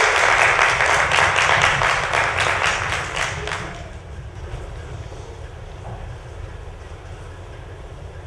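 Audience applauding, a dense clatter of many hands clapping that dies away about four seconds in, leaving only a low steady background rumble.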